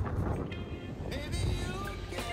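Wind rumbling on the microphone of a handheld camera carried by a moving cyclist, with a background song that has a wavering melody line.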